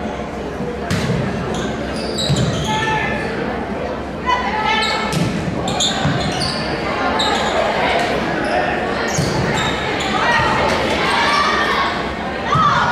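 Indoor volleyball rally in a reverberant gym: the serve about a second in, then a string of sharp ball hits. Sneaker squeaks on the hardwood floor and players' and spectators' voices run under it.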